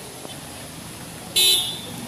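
A vehicle horn honks once, briefly, about one and a half seconds in, over steady street noise.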